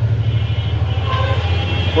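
A steady low rumble like a running motor vehicle. From shortly after the start, a faint, steady, high horn-like tone sounds with it.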